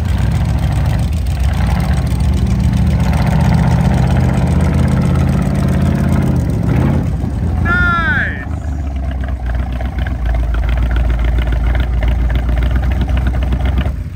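Engine of a mud-lifted Jeep on giant tires running loud as it pulls up, then settling to a lower, steady idle once it has stopped, about halfway through. A voice calls out briefly just before the idle settles.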